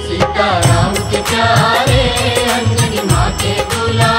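Hindi devotional bhajan music to Hanuman: a wavering melody line over a steady percussion beat.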